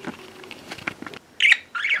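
Budgerigar chirping twice in quick succession, about a second and a half in: two short, high, loud calls.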